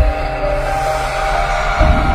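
Intro music: held notes over a deep bass, with a heavy low hit at the start and another just before the end.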